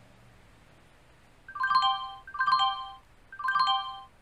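Phone ringtone: a short, falling run of chiming notes, repeated three times about a second apart, starting about one and a half seconds in.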